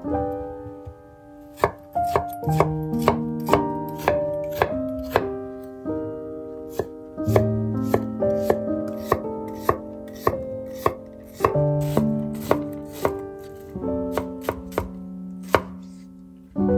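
Chef's knife chopping a white onion on a wooden cutting board: a long run of sharp, irregularly spaced knocks of the blade on the wood. Soft piano music plays underneath.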